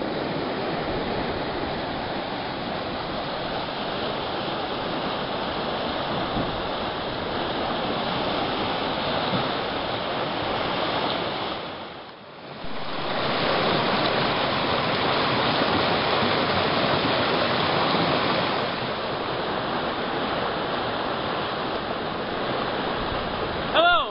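Water rushing and churning down a narrow concrete fish ladder (flume), a steady rush that dips briefly about halfway through and then returns.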